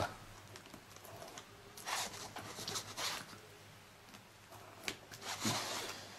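Ballpoint pen scratching across plastic embossing film (German film) in a few short strokes along a ruler, each stroke raising a tactile line. The strokes come about two and three seconds in and again briefly near the end.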